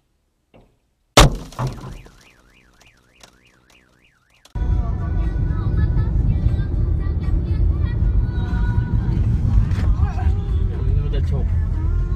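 A sudden loud crash about a second in, followed by a car alarm wailing up and down, about three sweeps a second, for a couple of seconds. From about four and a half seconds a loud continuous din of music and voices takes over.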